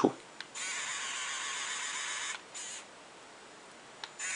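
A 3D pen's small filament-feed motor whirring with a high, steady buzz for about two seconds as it pushes out melted plastic, then a second, shorter whir.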